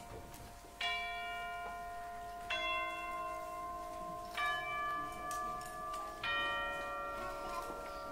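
Orchestral chimes struck slowly four times, each about two seconds apart, every note ringing on under the next, in a soft passage of concert-band music.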